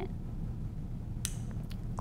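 Plastic quick-connect hose couplings of a DonJoy Iceman cold therapy pad being pushed back onto the unit: one sharp click a little past halfway, then a few fainter ticks, over a steady low hum.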